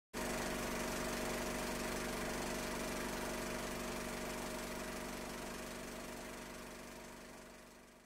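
Film projector running: a steady mechanical whirr with hum and hiss that starts suddenly and fades out over the last few seconds.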